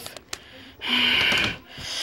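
A child's short breathy hiss or snort, about half a second long, near the middle, after a few faint clicks.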